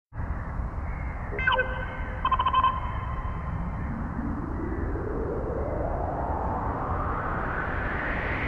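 Electronic logo-intro sound design: a low rumbling noise bed with a short ping about a second and a half in and a brief wavering tone just after two seconds in, then a whoosh that rises steadily in pitch through the second half.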